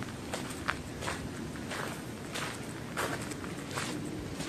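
Footsteps crunching on a gravel path, a person walking at an unhurried pace of roughly two steps a second.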